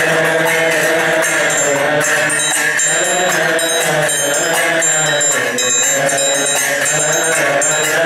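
Men's voices chanting a Coptic liturgical hymn together, with a pair of small hand cymbals keeping the beat. From about two seconds in, the cymbals strike about twice a second with a bright, high ring.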